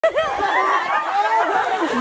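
Excited chatter of a group of children's voices, high-pitched and talking over one another.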